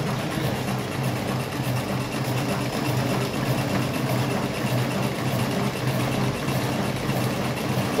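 Electric cigarette filling machine running steadily: a low, even motor hum with a fast, regular light clatter from its filling mechanism, a machine described as extremely quiet.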